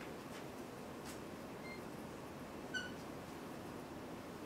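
Dry-erase marker writing on a whiteboard, with faint stroke sounds and one short, high squeak near the end, over steady room hiss.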